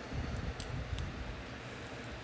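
A few light clicks and scrapes in the first second as a circuit board is slid into a small metal dongle case, over a low steady background hum.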